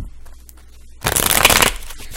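A deck of tarot cards being shuffled by hand: a dense, rapid run of card flicks that starts about a second in and lasts about a second.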